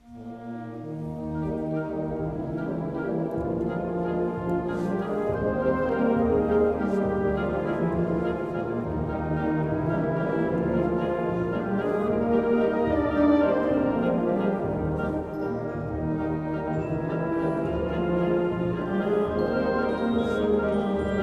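A concert wind band plays in a large church. Clarinets, flutes and brass come in together right at the start, and the music builds in loudness over the first few seconds, then carries on as full, sustained ensemble playing.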